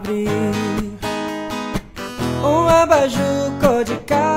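Music: an acoustic guitar playing chords in Brazilian MPB voice-and-guitar style, with a melody line that bends in pitch a little past halfway.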